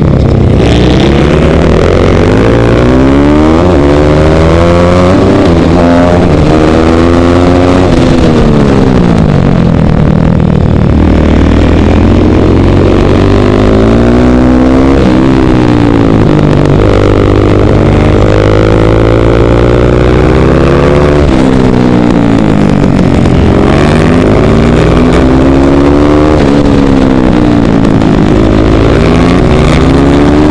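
KTM 450 SMR supermoto's single-cylinder four-stroke engine under racing load, heard from the rider's helmet. Its pitch climbs again and again as it accelerates and drops as the throttle is closed for the next corner.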